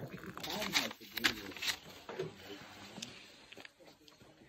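Hot water poured from a Jetboil cup into an insulated metal mug over a coffee steeping bag, splashing, with a few sharp clicks in the first two seconds; it quiets down after that.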